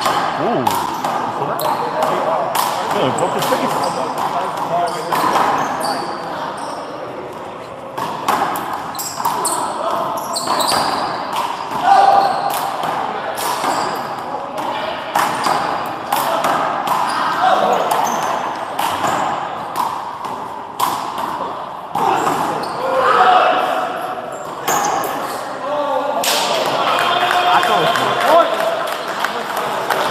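A small rubber handball slapped by hand and smacking off the front wall and floor again and again during a rally, the hits coming at an irregular pace and ringing in a large indoor hall. Voices call and talk alongside the hits.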